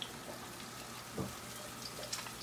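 Faint sizzling of cooking food, with a single light knock about a second in.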